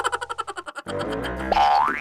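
Cartoon-style comedy sound effects added in editing: a fast rattle of clicks stepping down in pitch, then boing-like sliding tones ending in a quick rising sweep.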